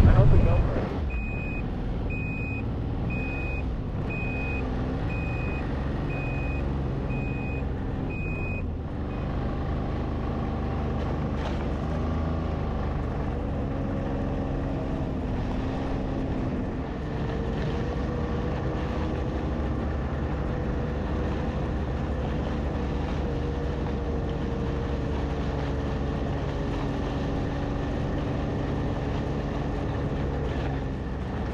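Side-by-side UTV engine running steadily while driving over snow, its pitch shifting slowly. A reversing alarm beeps about once a second and stops about nine seconds in.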